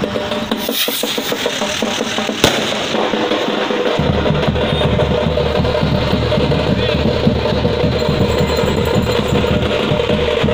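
Procession drums beaten in a fast, dense rhythm, growing heavier and fuller from about four seconds in. A single sharp bang cuts through about two and a half seconds in.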